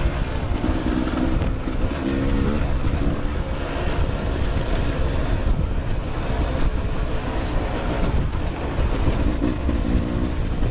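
Dirt bike engine running as the bike rides a rough, rocky trail, its note rising briefly a few times as the throttle is opened. Wind rumble on the microphone runs under it.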